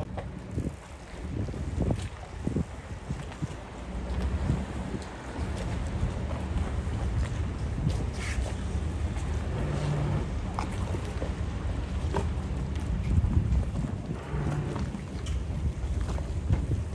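Low, steady rumble of a motor yacht's engines moving across a harbour, mixed with wind on the microphone and a few faint clicks.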